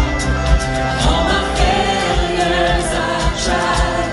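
Live worship band playing a contemporary Christian song: electric guitar and keyboard with a steady beat, and vocals coming in about a second in.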